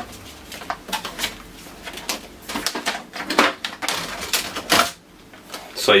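Plastic clicks and knocks of a Canon 337 toner cartridge being worked loose and pulled out of a Canon MF241d laser printer: a string of irregular sharp clicks.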